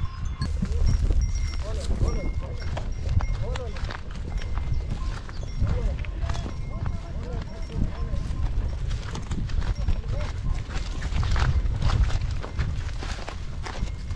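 Ox-drawn wooden cart loaded with sacks being pulled over wheat stubble: irregular knocks and clatter from the cart and hooves over a heavy low rumble. Short calls from a man's voice come through now and then.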